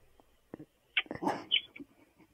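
A young woman crying: short catching breaths and a sharp sniffling gasp about a second in, with brief high whimpers between them.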